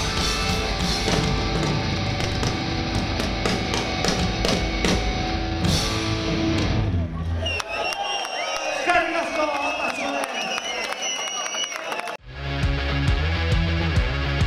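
Punk rock band playing live, distorted electric guitars, bass and drums. The song stops about seven seconds in, giving way to shouting and cheering voices, and loud rock music cuts back in abruptly near the end.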